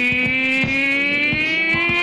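Blues harmonica played through a cupped vocal microphone: one long held two-note chord that slowly bends upward in pitch, with the band's drum hits behind it.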